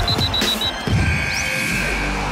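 A short radio news-alert music stinger. It opens with a quick run of four high beeps over heavy hits, moves into a held high tone, and a steady low musical bed comes in near the end.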